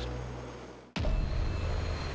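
A steady low engine hum fades away over the first second. After a sudden cut, a helicopter's engine and turning rotor give a steady, choppy low rumble.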